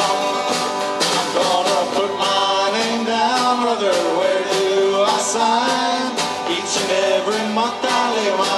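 A small band playing an upbeat 1940s-style song live: strummed acoustic guitar and snare drum beating time, with a bending melody line over them.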